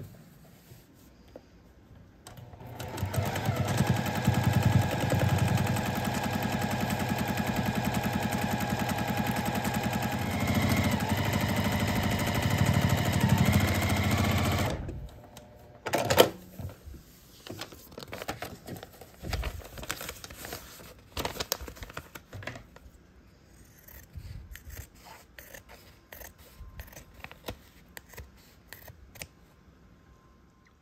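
Electric sewing machine stitching a seam through fabric and a paper foundation template, running steadily for about twelve seconds and then stopping. A sharp click follows, then scattered light clicks and rustles of handling.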